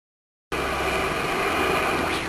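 Opening of a hardcore techno track: after half a second of silence, a steady, dense hissing drone over a low hum starts suddenly.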